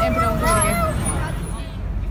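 Busy city street noise: a steady low traffic sound with crowd babble. A woman's brief 'mm-hmm' comes in the first second.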